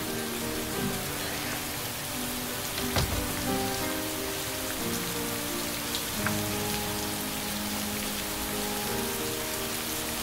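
Steady rain falling on pavement, with soft background music of sustained notes underneath and a single brief knock about three seconds in.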